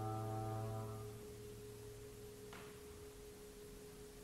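A low trombone note held with a rich, buzzy set of overtones, ending about a second in, over a steady pure high tone that goes on unchanged. A faint tap comes about two and a half seconds in.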